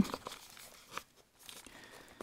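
Paper card tags rustling faintly as they are handled and drawn out of a paper envelope pocket, with a light tap about a second in.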